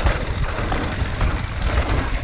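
Wind rushing over the camera microphone mixed with the mountain bike's tyres and frame rumbling and rattling over a rough dirt trail at speed: a steady, rough noise.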